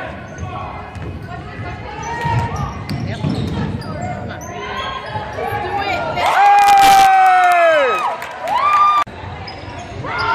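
Basketball game in a gym: ball bounces and crowd voices, then about six seconds in a long, loud held shout from a spectator that drops in pitch at its end, followed by a shorter shout. The sound cuts off suddenly just after nine seconds.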